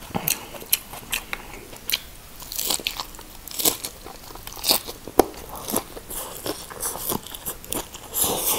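Close-miked eating of fresh shrimp spring rolls in rice paper with lettuce: irregular wet mouth clicks and smacks with crisp crunches of lettuce as they are bitten and chewed.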